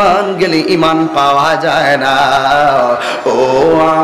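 A man's voice chanting a Bengali sermon (waz) in a melodic, drawn-out tune, holding long notes, amplified through microphones.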